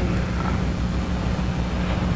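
Room tone: a steady low hum with a faint hiss, carried through the sound system.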